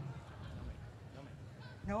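A low background of faint voices and hall noise, with a man's voice saying 'No' right at the end.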